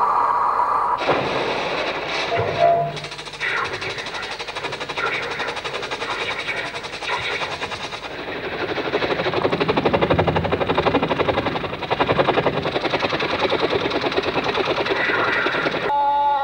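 Live phonetic sound poetry: a performer's voice and breath making wordless mouth noises in a fast, even run of short pulses, without words.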